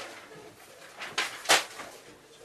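Sheets of paper rustling in short swishes as they are handled, two of them about a second in, a third of a second apart.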